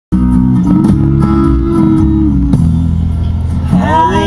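Music with a strong bass line playing on a car stereo, heard inside the car. Near the end a voice rises into a shout over it.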